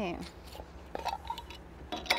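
A few faint, short clinks of a knife against a plate and jelly jar as jelly is spread on toast, over a steady low hum.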